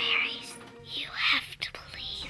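A breathy whispered voice, two short whispered phrases about a second apart, with background music fading under it.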